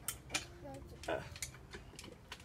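A few light clicks and taps from bicycle parts and tools being handled during assembly, with a brief faint voice between them.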